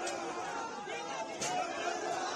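Crowd of protesters shouting over one another, many voices at once, with a brief sharp click about one and a half seconds in.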